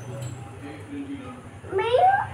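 A small girl's high-pitched voice rising in pitch in a drawn-out call near the end, over a steady low hum.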